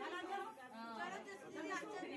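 A group of women chattering over one another.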